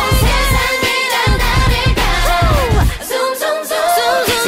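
K-pop dance-pop track with female vocals singing over a heavy bass beat; the bass drops out for under a second near the end, then comes back.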